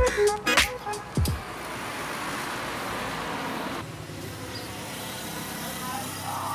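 Background music with a beat trails off in the first second or so. It gives way to a steady rush of road vehicle noise, which drops off sharply about four seconds in.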